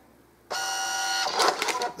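Till's built-in receipt printer printing a receipt after a cash payment: a steady mechanical whirring whine that starts suddenly about half a second in, runs for under a second and then trails off.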